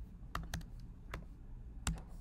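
Four keystrokes on a computer keyboard, spaced unevenly over the two seconds, as the word "true" is typed.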